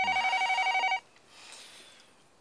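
Telephone ringing: one electronic ring, a fast warbling trill lasting about a second.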